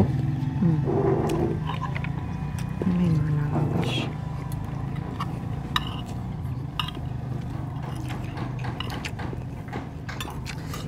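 Forks and spoons clinking and scraping on ceramic plates as two people eat, in scattered sharp clicks, over a steady low hum. Two brief low vocal sounds come about a second in and again about three seconds in.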